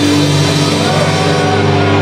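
Live rock band playing loud, its guitar chords held steady.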